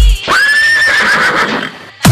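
A horse's whinny, used as a sound effect in a DJ remix during a break in the heavy bass beat. It jumps up sharply, wavers, and fades out before the beat comes back.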